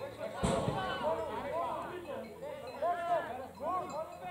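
Several distant voices calling out across a football pitch, overlapping one another, with a single thump about half a second in.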